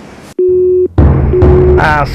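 Telephone busy-tone beeps, a steady single tone switching on and off. About a second in, a loud low drum hit of dramatic film music comes in under a further beep.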